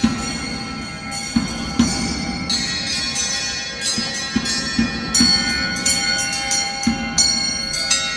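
Brass bells hung on a wooden frame being struck by hand. Many overlapping ringing tones sound, with fresh strikes every second or so, and they ring on in a large stone church. Irregular low thuds sound beneath the bells.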